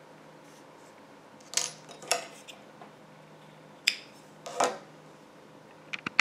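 Four short clicks and scrapes from hands handling a tapestry needle and acrylic yarn while weaving in a loose end, over a faint background hiss.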